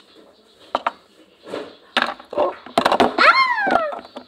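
Hard plastic toy pieces knocking a few times as dolls and dollhouse parts are handled, with a quick cluster of knocks near three seconds in. Near the end a child's voice slides down in pitch in one drawn-out exclamation.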